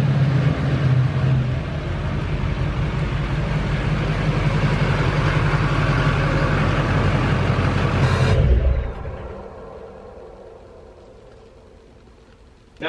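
Chevrolet Silverado pickup's engine idling with a steady low rumble, which dies away over the last few seconds from about eight and a half seconds in.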